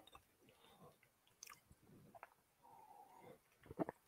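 Near silence: room tone with a few faint, scattered small clicks.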